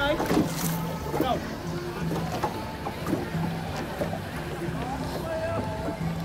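Indistinct voices calling and shouting out on the river, around a long Cambodian racing boat crewed by many paddlers, with a low hum that breaks on and off underneath.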